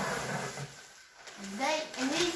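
Plastic packaging and a paper padded mailer rustling as they are handled, dying away about halfway through; a child's voice starts near the end.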